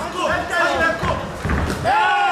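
Men's voices calling out around a kickboxing ring, with a dull thud about one and a half seconds in.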